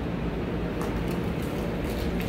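Steady low rumble and hiss of background noise in a shop, with a few faint clicks about a second in.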